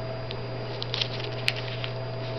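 Light clicks and rustles of fingers handling sticker sheets on a ring-binder page, with a sharper click about one and a half seconds in, over a steady electrical hum.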